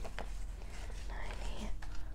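Paper banknotes being handled and shuffled, with soft rustling and a few light clicks, and faint whispering under the breath.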